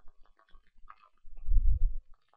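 Faint small clicks, then a low rumble for the last part of a second.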